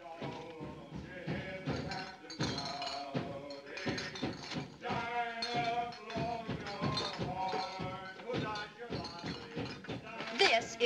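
Men singing with musical accompaniment, a rhythmic song with clear pitched voices.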